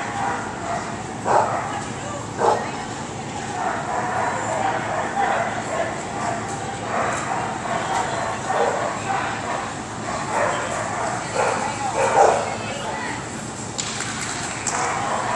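A small dog barking repeatedly in short bursts while running an agility jumpers course, over background talk from people around the ring.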